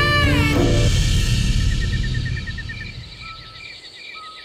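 Background score: a wind-instrument melody with sliding notes ends about half a second in, leaving a low rumbling drone that fades away. Faint short chirps repeat about three times a second underneath.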